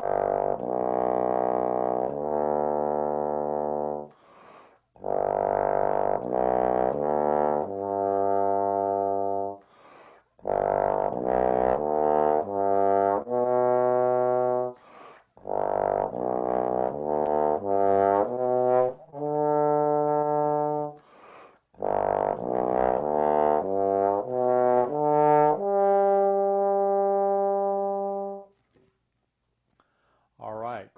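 Double-trigger bass trombone playing a slow, slurred lip-flexibility exercise in the pedal register. Several phrases of held notes are separated by short breaths: first low pedal notes, then arpeggios climbing up from pedal G. It ends near the close on one long held note.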